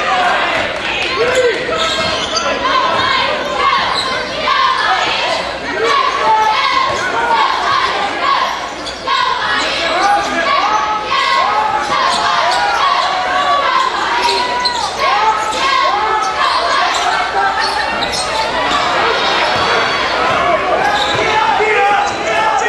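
Live college basketball play on a hardwood court: a ball dribbling and many short sneaker squeaks on the floor, echoing in a large gym, densest in the middle of the stretch.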